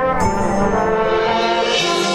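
Marching band brass playing sustained, loud chords, with a new chord entering shortly after the start.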